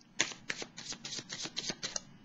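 Tarot cards being handled and shuffled by hand: a quick run of crisp card clicks, about six a second.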